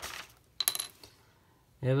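A coin used for scratching lottery tickets set down on a hard surface: one short metallic clink with a brief ring, after a short rustle.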